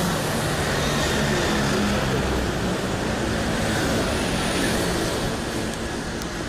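City street traffic noise: a steady wash of passing vehicles, with the low hum of an engine running close by.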